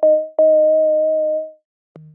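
Thor software synthesizer playing a soft sine-wave tone layered with a second sine an octave below, with a slight vibrato, through a high-pass EQ filter that trims the bass. One note ends, then a new note comes in about half a second later, is held for about a second and fades away.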